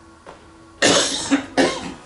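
A person coughing twice, loud and close to the microphone, the second cough following right after the first.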